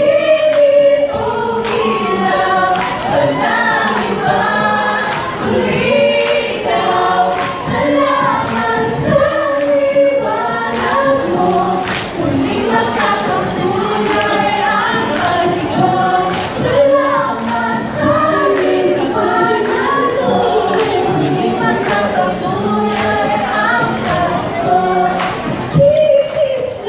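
An a cappella vocal group of mixed female and male voices singing in harmony into microphones, amplified over a PA, with a steady percussive beat marking the rhythm.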